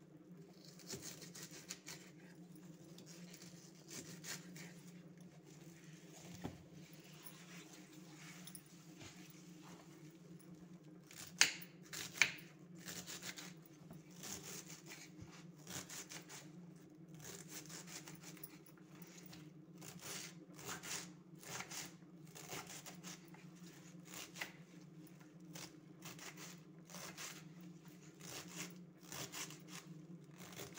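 A knife chopping white radish stalks and leaves on a wooden cutting board: faint, uneven chops, sparse at first and coming thick and fast from about a third of the way in, with two sharper strikes there. A steady low hum runs underneath.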